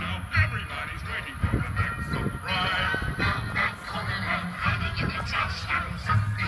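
Music for a Halloween light show played through outdoor four-inch monitor speakers and a subwoofer, with a repeating bass line under wavering melodic voices.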